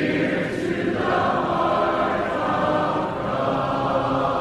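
A choir singing, several voices together holding long notes.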